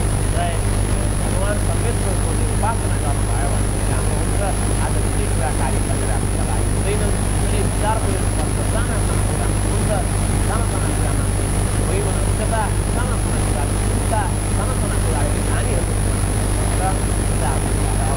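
A man talking steadily over a loud, constant low hum, with a thin high-pitched whine.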